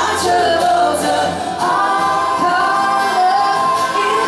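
Live three-part vocal harmony, a woman and two men singing together over an acoustic guitar; from about a second and a half in they hold long notes together.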